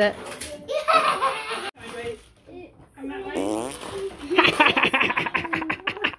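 Voices of young children and an adult, turning from about four seconds in into a run of quick, rhythmic bursts of laughter.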